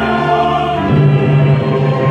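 Choir singing with an orchestra of strings and brass: sustained choral chords in a solemn mass setting, the harmony shifting about a second in.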